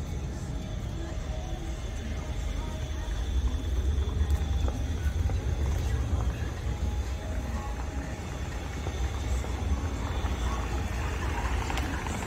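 Outdoor street ambience dominated by a steady low rumble, with faint voices in the background.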